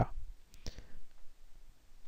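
A single faint click about two-thirds of a second in, then low room noise.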